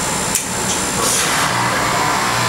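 Heat pump outdoor unit running with a steady hum, with a single sharp click about a third of a second in and a short hiss about a second in, as the test jumper pin is set on the defrost board to force the unit into defrost.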